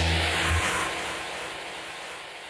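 The tail of an electronic TV intro theme: a deep bass note cuts off about half a second in, leaving a whooshing noise that fades away.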